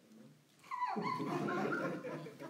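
People laughing, breaking out suddenly a little over half a second in and carrying on loudly.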